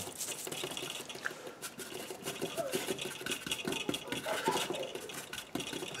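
A paintbrush scrubbing and mixing paint on a paper palette, then working it onto a gessoed board: a quick, uneven run of soft scratchy brush strokes.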